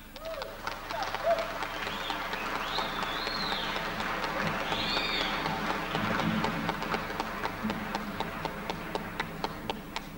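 Audience applauding, the clapping swelling around the middle and thinning toward the end, with a few high sliding whistles in the middle.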